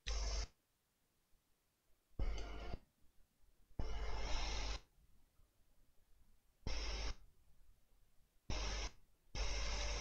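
Hot air rework station blowing at 500 degrees onto a laptop graphics chip to reflow its solder balls from the top. The airflow is heard as a hiss that cuts in and out, in six short stretches of half a second to a second.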